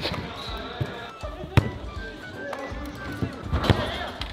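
A football being kicked on an indoor artificial-turf pitch: two sharp knocks, about a second and a half in and again near the end, over background music.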